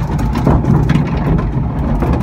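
A log flume's lift hill carrying the log up, with water running: a steady, loud, noisy rumble and a few faint clicks.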